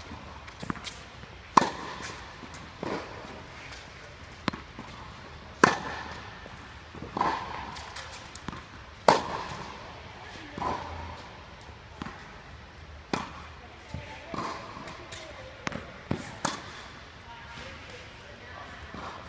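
Tennis balls struck back and forth with rackets in a baseline rally on an indoor hard court, with ball bounces between the hits. The loudest sharp hits come about every three and a half to four seconds, with softer bounces and far-side hits in between, each ringing briefly in the hall.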